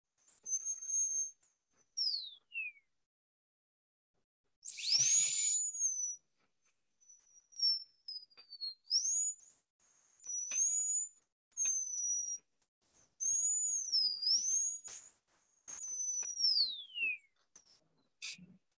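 High-speed air-turbine dental handpiece whining at a high pitch in several short runs as it cuts the front teeth. Its pitch sags and recovers while the bur works and glides down as each run stops. One start comes with a burst of spray hiss.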